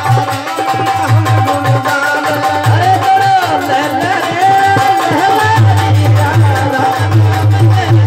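Live Rajasthani folk bhajan: male voices singing over repeated low strokes of a dholak and the sharp clinks of small hand cymbals (manjira).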